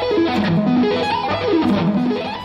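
Electric guitar playing fast sweep-picked arpeggios, quick runs of notes rising and falling.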